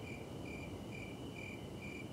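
Crickets chirping in the night: a steady high trill with a second cricket's short chirps repeating about twice a second over it, faint.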